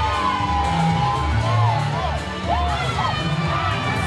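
A party crowd cheering and shouting over loud dance music with a pulsing bass beat.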